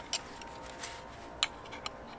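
A few light, sharp clicks and taps from handling the plastic floodlight fixture and its hook at the wall mounting bracket, the sharpest a little past halfway.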